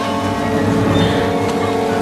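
A steady engine-like drone running without a break, mixed with film score music.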